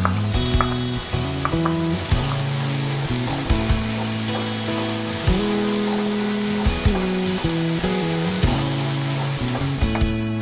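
Onion-tomato masala sizzling in a frying pan as it is stirred, a continuous crackling hiss, under background music with a steady bass line.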